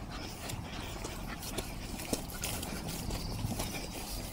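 Faint rustling and a few light clicks as a dog on a lead is walked across grass, with a low outdoor noise floor.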